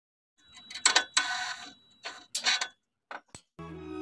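Intro sound effects: a quick run of short clicks and swishes, followed by background music that starts about three and a half seconds in.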